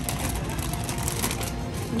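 Crinkling of a plastic chip bag being handled, a dense run of crackles, over background music.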